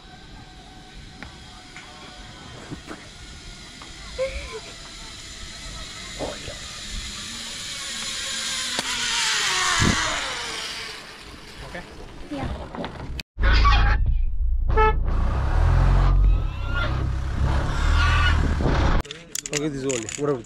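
Zip-line trolley running along the steel cable as a rider approaches and passes close by: a whir that builds for a couple of seconds and drops in pitch as it goes past. Later, voices over a heavy low rumble on the microphone.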